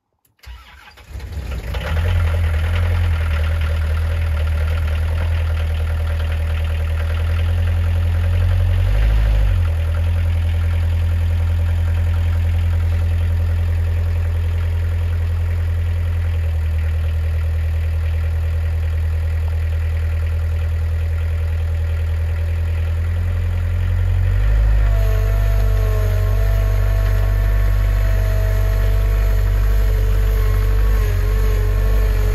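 Multiworker 2000 tracked forwarder's engine cranking and catching in the first second or two, then running steadily. About 24 seconds in the engine note deepens and a steady whine joins it.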